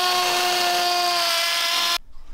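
Cordless drill with a masonry bit boring a fixing hole into a wall, its motor whining at a steady pitch that sags slightly under load late on, then stopping suddenly.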